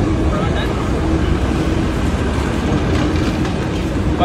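Street noise: a steady low rumble of traffic with indistinct voices of passers-by.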